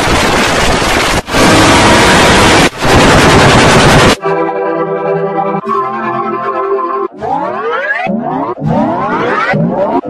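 Heavily edited, distorted audio. First comes about four seconds of a loud, harsh noise blast, cut off twice. Then a run of pitched, music-like tones follows, with several quick rising glides in the last few seconds.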